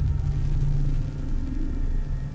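Deep, steady cinematic rumble: a sound-design drone with a sustained low hum.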